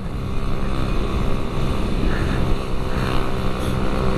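Motorcycle engine running steadily while riding at road speed, with wind and road noise.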